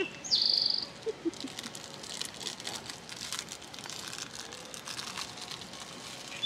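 Songbird singing outdoors. Just after the start comes one clear phrase, a short downward-slurred whistle followed by a high trill, and fainter chirps follow.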